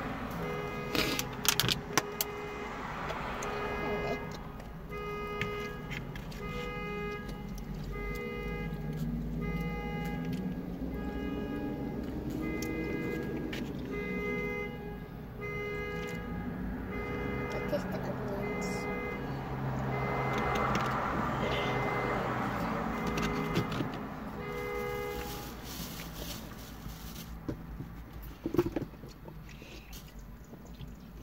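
A high electronic beep repeating about once a second for some twenty seconds, over a low murmur. A few sharp clicks come near the start.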